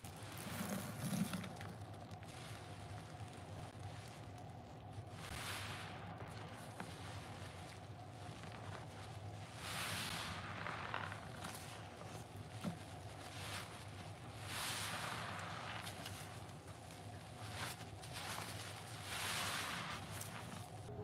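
A soap-soaked foam sponge squeezed and released in gloved hands, thick suds squelching as it is pressed, a squeeze about every four to five seconds.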